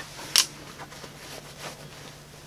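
Small hand-held gear being handled: one sharp click about a third of a second in, then a few faint taps and rustles over a low steady hum.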